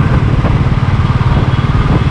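Motorcycle engine running steadily while the bike is ridden, a low rumble of rapid, even pulses.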